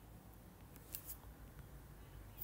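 Faint taps and scratches of a stylus writing on a tablet's glass screen, with a few short clicks about a second in, over near-silent room tone.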